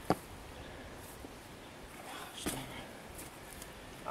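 Mostly quiet, with a brief click just after the start and another faint knock about two and a half seconds in, as a crossbow bolt lodged deep in a foam 3D deer target is gripped and worked at by hand.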